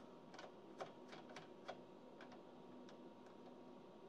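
Near silence with a faint steady hum, broken by a scatter of small, faint clicks and taps, most in the first two seconds: test leads and banana plugs being handled on the bench.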